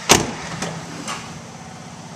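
A single loud thump of a pickup truck door right at the start, fading quickly, over the steady idle of the 2005 Ford F-150's V8 engine. A couple of faint clicks follow.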